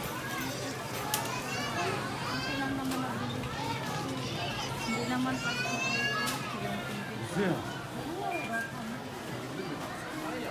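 High-pitched children's voices calling and squealing over the chatter of a crowd of shoppers, loudest in two stretches about a second in and again around five to six seconds.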